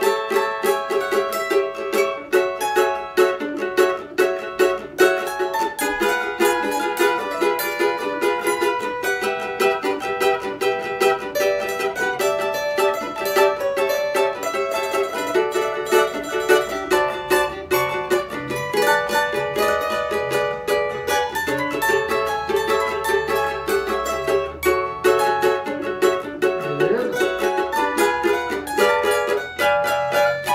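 Two cavaquinhos played together in duet, plucked melody notes over a steady picked rhythm, without a break.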